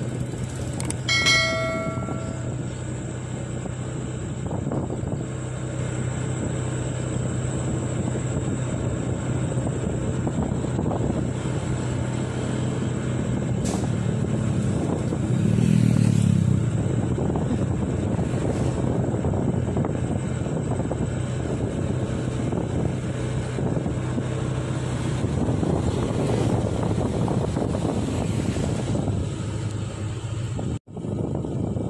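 Motorcycle engine running steadily at road speed, with wind rushing over the microphone. About a second in there is a short pitched beep. In the middle a passing car's sound swells briefly and fades.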